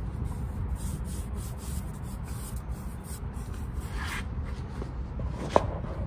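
Rubbing, scratchy handling noise on a handheld microphone over a low rumble, with a single sharp click near the end.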